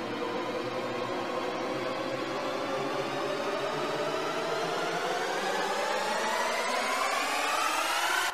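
A synthesized whooshing whine in the soundtrack, rising slowly and steadily in pitch and growing a little louder throughout.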